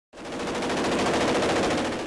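Belt-fed machine gun firing one long, rapid, unbroken burst of automatic fire.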